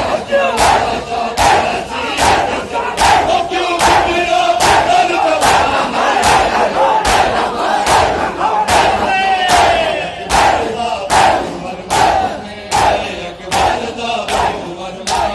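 A crowd of men beating their chests with open hands in unison (matam), an even rhythm of loud slaps a little faster than one a second. Massed men's voices chant the noha lament between the strikes.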